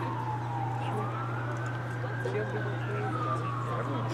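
A siren wailing: its pitch slides down, climbs again about a second in, and falls once more near the end, over a steady low hum.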